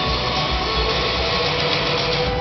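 A live band playing, with drums, guitar and keyboards, heard loud from the audience in a large hall.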